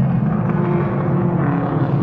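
A pack of short-oval stock cars racing through a turn, their engines running together in a loud, steady drone.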